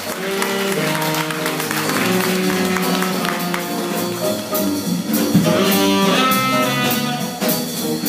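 Live small-group jazz: a tenor saxophone playing over an upright double bass and a drum kit, with regularly spaced cymbal strokes.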